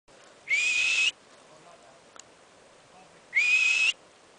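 Hoary marmot giving two loud alarm whistles about three seconds apart, each about half a second long, rising slightly in pitch and somewhat raspy.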